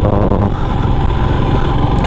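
Royal Enfield Himalayan's single-cylinder engine running steadily under way, mixed with the rush of wind and road noise.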